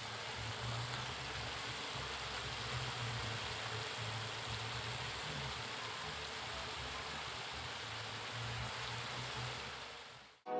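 Stir-fried fern shoots simmering and sizzling in a wok, a steady hiss with a low hum underneath.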